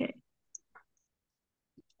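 A few faint, brief computer mouse clicks in a mostly quiet stretch.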